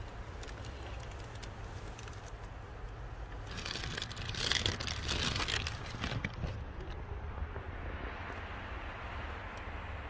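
Plastic sheeting rustling and crinkling, loudest for a couple of seconds near the middle, over a steady low rumble.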